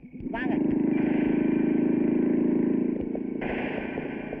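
A motor vehicle's engine running loudly and steadily with a fast, even flutter for about three seconds, then dropping away as the soundtrack changes.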